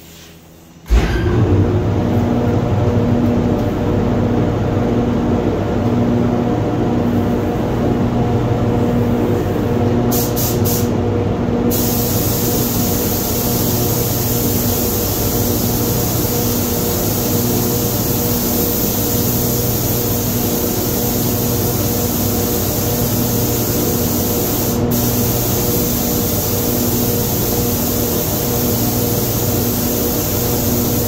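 Paint booth air system switching on about a second in and running steadily with a hum. From about 12 s the hiss of an air-fed spray gun joins it as clear coat is sprayed onto the car's side.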